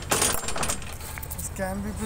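A short burst of rattling, jangling handling noise in the first second, then a man speaks a word near the end.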